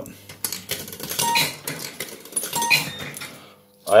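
Fruit machine in play: a run of clicks and rattles with two short electronic beeps as its stepper reels are set spinning.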